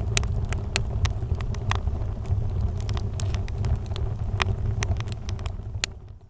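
Wood fire burning, with frequent sharp, irregular crackles and pops over a steady low rumble.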